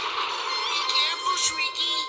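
Cartoon soundtrack: a hissing rush of noise that thins out within the first half second, giving way to music with wavering high notes over a held steady tone, and a sharp click about one and a half seconds in.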